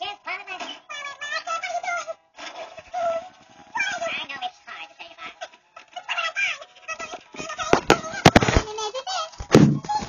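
A very high-pitched voice chattering in quick, changing syllables that make no clear words. Several sharp clicks come about eight seconds in, then a loud thud near the end.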